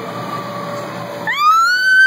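A young girl's long high-pitched scream, rising sharply about a second and a half in and then held, as she goes down a big inflatable slide: a scream of fright.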